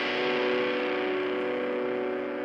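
Ska-punk song at a stop: a single held electric guitar chord rings on alone and slowly fades.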